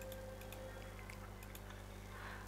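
Faint, irregular computer mouse clicks over a low, steady hum.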